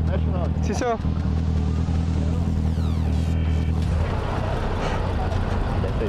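Yamaha XJ6 motorcycle's inline-four engine idling steadily under the rider, its even hum turning rougher and less steady about four seconds in. A short voice is heard just after the start, and a falling high-pitched sweep around three seconds in.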